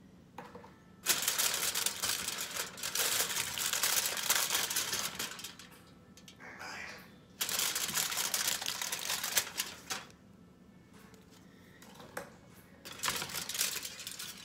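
Aluminum foil crinkling and crackling as it is handled and peeled away from thin baked cookies, in two long stretches of a few seconds each, with a shorter crackle near the end.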